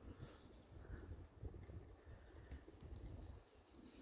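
Near silence: faint outdoor background with a low, uneven rumble.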